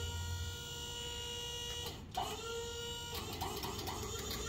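Electric-over-hydraulic pump on a roll-off tilt trailer running and cutting in and out as its Lodar wireless remote loses signal, the so-called "Lodar chatter". A steady whine breaks off briefly about halfway through and starts again.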